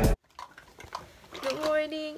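Background music cuts off abruptly at the very start, followed by a moment of quiet with a few faint clicks. Then, about one and a half seconds in, a young woman's voice starts speaking.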